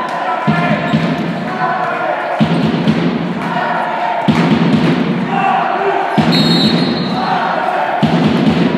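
Volleyball bouncing on a hardwood sports-hall floor, four slow bounces about two seconds apart that echo in the hall, with players' voices throughout.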